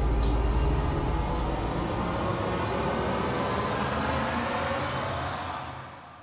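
Dramatic background score: a low rumbling drone with a noisy wash over it, slowly fading out near the end.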